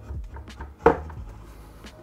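Hinged screen of a Geminos T stacked dual monitor being folded down onto its base: a couple of light clicks, then one sharp knock about a second in as it closes.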